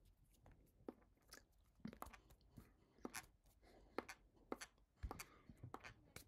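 Faint, irregular clicks and soft taps from a person signing, as the fingers touch the lips and chin and the mouth makes small smacks, about one or two a second.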